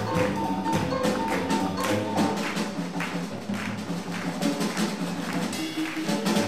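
Live swing jazz band with horns and drums playing, with a steady beat.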